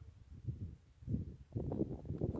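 Wind buffeting a phone's microphone in irregular low gusts, with some handling noise as the phone is moved.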